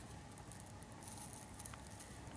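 Faint rustling with a few light ticks over quiet room tone.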